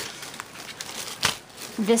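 Plastic packaging of a pack of gift bags crinkling as it is handled, with a few sharp crackles. A woman's voice starts near the end.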